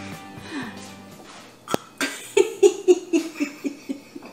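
A woman laughing hard in a quick run of repeated bursts, about four a second, through the second half. Before that there is a single sharp click, and background music fades out early on.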